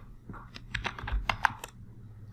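Computer keyboard keystrokes: a quick run of about ten sharp key clicks over a second and a half.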